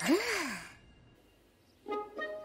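A cartoon character's short breathy vocal sound, sighing and gliding up then back down in pitch over about half a second. Music starts near the end.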